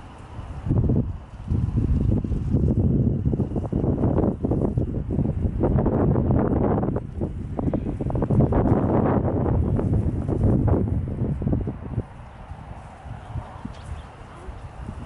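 Wind buffeting the microphone in gusts: a loud, ragged low rumble that starts about a second in and eases off near the end.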